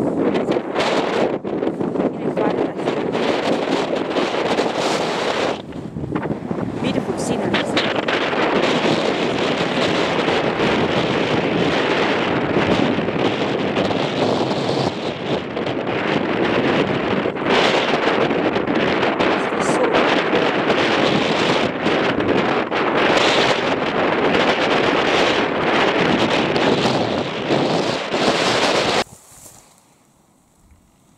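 Strong wind buffeting the microphone: a loud, rough rushing full of gusty thumps that cuts off suddenly near the end.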